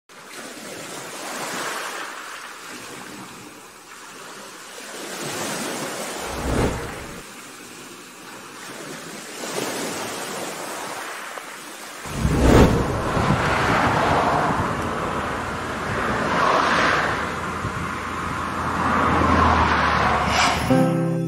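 Ocean surf and wind: a rushing noise that swells and ebbs in several washes, growing louder and deeper from about twelve seconds in.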